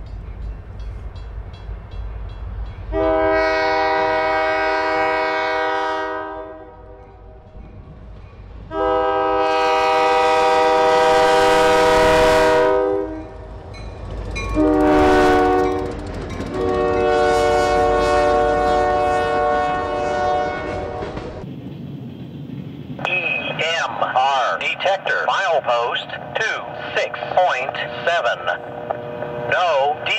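Diesel freight locomotive's air horn sounding the grade-crossing signal: two long blasts, a short one and a long one, over the low rumble of the passing train. Near the end a defect detector's synthesized voice comes over a radio scanner.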